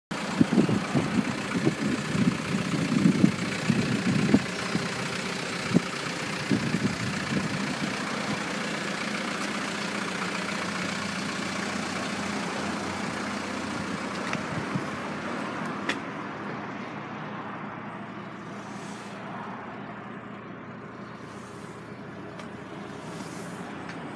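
Steady outdoor vehicle noise, with wind buffeting the microphone in loud low thumps during the first several seconds. About 16 seconds in there is a click, and after it the sound turns duller and quieter.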